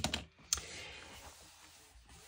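A small sharp click, like a plastic pen set down on a cutting mat, then hands rubbing over the paper pages of an open hardback book, a soft steady rustle.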